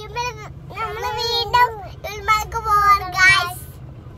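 A young child singing in a high voice in several short phrases, inside a moving car, with a steady low engine and road hum underneath.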